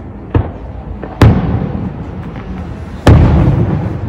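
Aerial firework shells bursting: a small bang just after the start, then two loud booms, about a second in and about three seconds in, each trailing off in a long rolling rumble over the display's steady low rumble.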